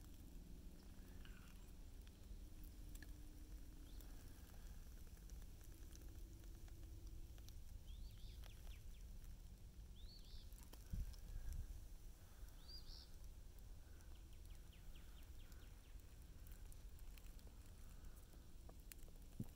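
Near silence: faint outdoor ambience with a low steady rumble, a few brief high chirps in the middle, and a single soft thump about eleven seconds in.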